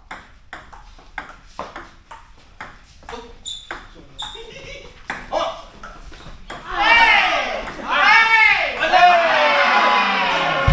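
Table tennis rally: a celluloid ball clicks sharply off the table and paddles, about two to three hits a second, for the first six seconds or so. Then loud voices of the players break in and carry on.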